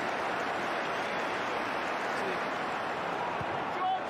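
Large football stadium crowd cheering and clapping to celebrate a goal: a steady, even wash of noise with no single voice standing out.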